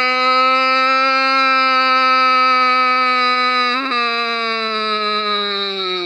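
A person's long, drawn-out crying wail held on one note. It breaks briefly about four seconds in, then goes on at a lower pitch and sinks slowly.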